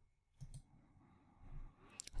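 Faint computer mouse double-click, two quick clicks about half a second in, over near silence.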